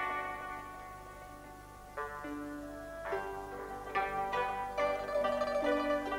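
Instrumental background music of plucked strings. Held notes fade away over the first two seconds, then fresh plucked notes come in about once a second.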